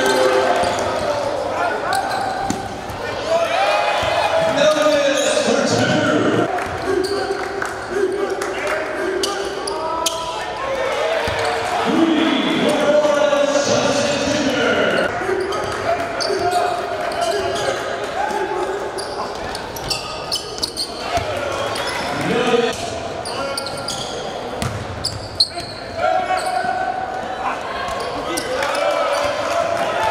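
Live basketball game sound in an echoing gymnasium: a ball dribbling on the hardwood court, with shouting from players and the crowd.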